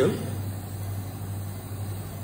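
Steady low hum with a faint even hiss: operating-room background noise from running equipment.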